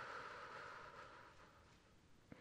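A slow, soft exhale through pursed lips, a gentle whoosh that fades to near silence.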